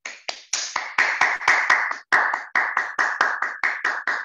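Hands clapping in applause: a steady run of distinct claps, about five a second, with a brief break about halfway.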